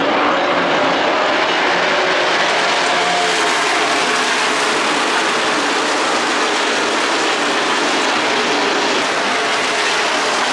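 NASCAR stock cars running laps around the track, a loud, steady engine roar from the field with no single car standing out.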